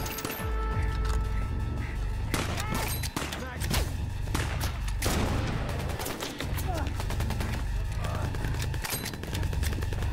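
Sustained gunfire in a firefight: many rapid shots from automatic rifles, close together, with music held low underneath.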